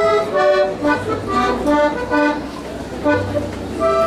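Live band music: acoustic guitars under a melody of short, steady notes, several a second.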